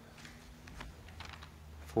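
Faint scattered clicks and rustles of Bible pages being turned to find a passage, over a low steady hum.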